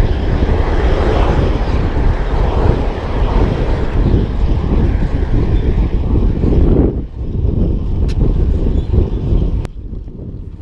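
Loud wind rumble on the action camera's microphone from riding a road bike at speed, with road and tyre noise mixed in. The level dips briefly about seven seconds in, then the rumble carries on lower.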